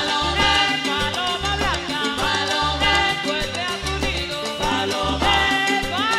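Live sonora-style cumbia band playing an instrumental passage: a repeating bass figure under steady percussion, with trumpet lines bending in pitch above.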